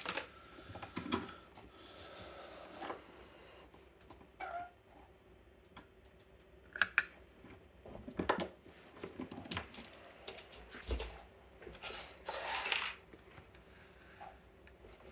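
Light metal clicks, clinks and knocks of a brass Medeco lock cylinder being handled, freed from a clamp vise and set down on a pinning tray, with a few short ringing clinks, a dull thump about eleven seconds in and a brief scrape soon after.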